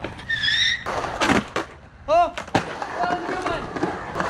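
Skateboard rolling away on concrete as the rider pushes off, with scattered clacks and a scrape about a second in. There is a brief high squeal near the start and a short vocal sound about two seconds in.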